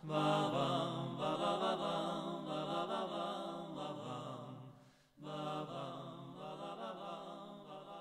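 Male voices in a Basque vocal trio singing long held chords in close harmony, with no instruments heard. The first chord breaks off about five seconds in; a second one follows and slowly fades.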